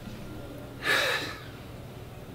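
A man's single sharp, forceful breath, about half a second long, a second in, pushed out while he holds a hard abdominal flex in an arms-overhead pose.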